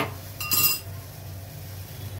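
Metal clinking against a stainless-steel pot: a sharp click at the start and a second, ringing clink about half a second in.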